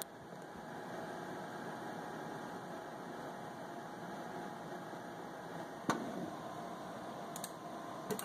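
Steady faint room hiss, with one sharp computer-mouse click about six seconds in and two faint clicks near the end.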